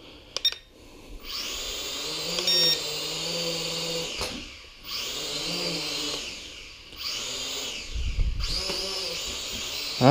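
Syma X5C quadcopter's small motors and propellers whining in flight, the pitch rising and falling in three surges as the throttle is worked.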